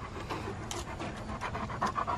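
German shepherd panting close by: a run of quick, short breaths.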